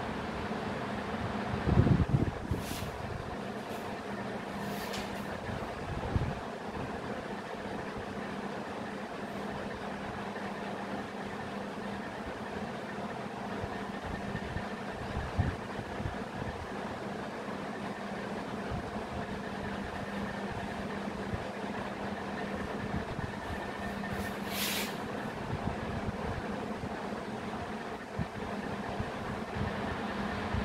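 Steady mechanical hum with a constant low tone, with a knock about two seconds in and a few faint strokes of a marker writing on a whiteboard.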